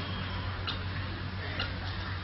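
Steady hiss and low electrical hum of the microphone and sound system in an otherwise quiet room, with a few faint ticks, the first about two-thirds of a second in and two more near the end.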